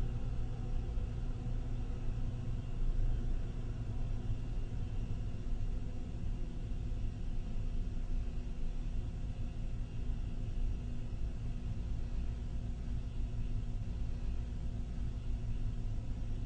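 A five-pound dry-chemical fire extinguisher discharging continuously, a steady low rushing rumble of gas and powder, emptied in one long squeeze.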